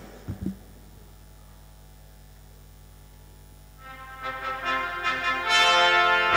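A steady low hum for about four seconds, then electronic keyboards start playing sustained chords that build in loudness toward the end.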